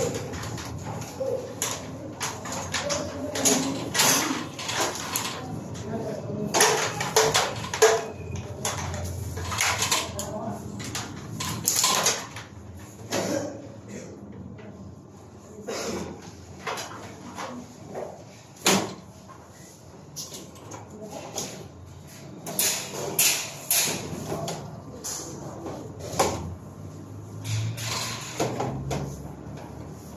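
Indistinct talking, mixed with repeated short knocks, clicks and scrapes from hands working with electrical cables overhead.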